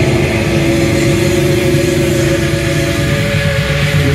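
Death/thrash metal band playing live: heavily distorted electric guitars and bass holding long sustained notes over a dense, churning low end.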